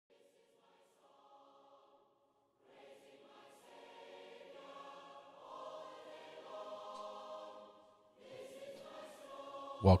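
A choir singing long, held chords, quiet, building gradually in level after a short break about two seconds in.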